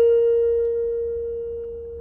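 A single B flat held on an electronic keyboard, one clear steady tone that fades slowly away.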